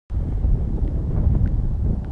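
Strong wind buffeting the camera microphone: a loud, low, rumbling noise that cuts in abruptly just after the start.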